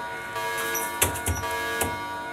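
A steady drone of several held tones, with a few dull thumps about a second in and again near the end.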